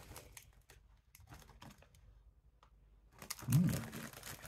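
Plastic crisp share bag crinkling as it is handled and rummaged in, faint scattered crackles at first and louder near the end.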